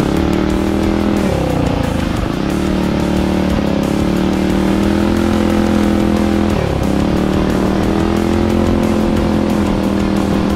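Minibike's small engine running under throttle on a dirt trail. The revs drop briefly about a second in and again near seven seconds, as the throttle is eased, then pick back up.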